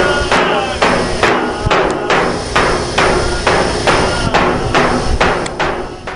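A steady run of sharp knocks, about two a second, each with a short ring after it.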